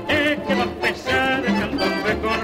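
Orquesta típica playing a candombe: wavering, vibrato-laden melody lines over a repeating low bass note about once a second.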